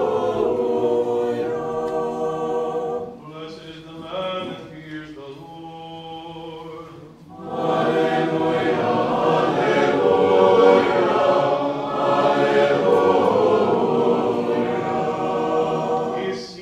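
A choir singing Orthodox chant without instruments. About three seconds in the singing drops to a softer, thinner passage, and the full choir comes back louder about seven and a half seconds in.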